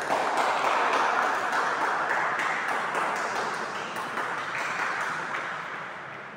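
Spectators applauding in a large, echoing sports hall. The clapping starts suddenly and slowly dies away over several seconds.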